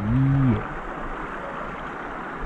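Shallow rocky stream flowing: a steady rush of water, heard clearly once a man's voice stops about half a second in.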